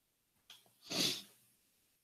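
A man's single short, hissy burst of breath through the nose about a second in, sneeze-like, after a faint click.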